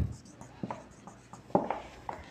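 Faint scratching and tapping on paper, a few short strokes with a slightly louder one about one and a half seconds in.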